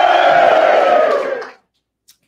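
A long, high-pitched held vocal cry, a drawn-out playful call, that slides a little lower in pitch and cuts off about a second and a half in.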